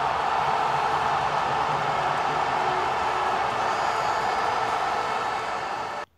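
A steady rushing noise that cuts off suddenly at the end.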